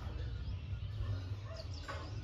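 Quiet outdoor background: a steady low rumble with a few faint, short, high bird calls.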